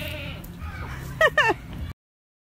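A farm animal bleating twice in quick succession about a second in, each short call falling in pitch. The sound cuts off suddenly near the end.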